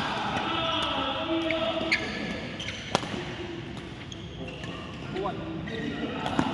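Badminton rally: a few sharp racket strikes on the shuttlecock, the loudest about three seconds in, and short squeaks of shoes on the court, over the chatter of voices in the hall.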